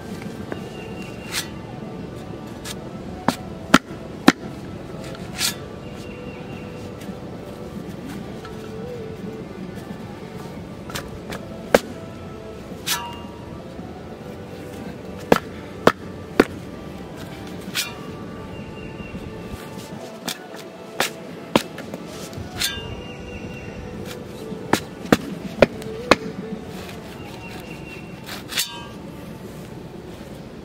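Background music, with a steel spade shovel repeatedly stabbing and cutting into packed clay soil in sharp, irregular strikes every second or two.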